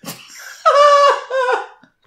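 A person's high-pitched, drawn-out vocal reaction in two notes, a long one that falls at its end and a shorter lower one.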